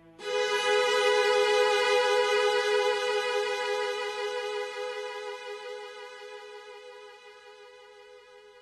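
String music: a violin enters about a quarter second in on a single long held high note with vibrato, loud at first and then slowly fading away.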